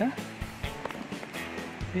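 Background music with held tones and a soft beat about twice a second.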